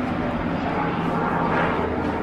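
Airplane flying overhead, a steady drone.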